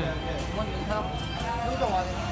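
People talking over a low, steady rumble.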